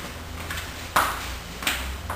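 Handling noise from a classical guitar being lifted off its stand and settled for playing: a sharp knock about a second in, then a lighter one, each briefly ringing in the wooden body. A steady low hum runs underneath.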